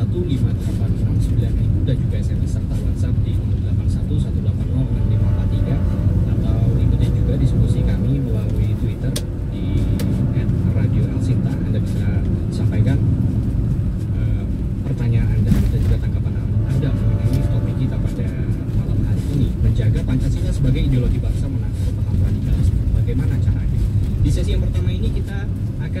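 Steady low road and engine rumble of a car being driven, heard from inside the cabin, with talk radio playing under it.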